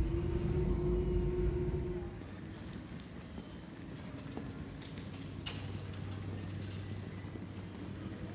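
Airliner cabin noise from the engines: a low rumble with a steady hum. It cuts off abruptly about two seconds in, giving way to quieter indoor background noise with a low hum and a couple of sharp clicks.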